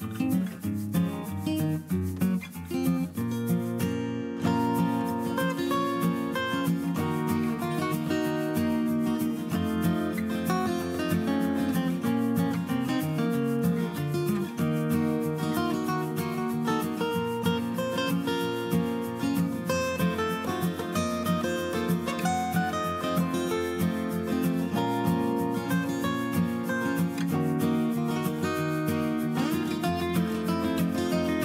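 Instrumental background music led by acoustic guitar, playing steadily.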